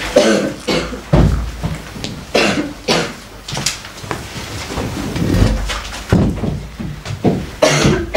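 A string of short, irregular rustles and bumps close to the microphone, a few with heavy low thuds, from people shifting and handling things right beside it.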